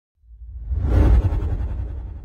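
Whoosh sound effect for an animated logo reveal: a deep, rumbling swoosh that swells to a peak about a second in and then fades away.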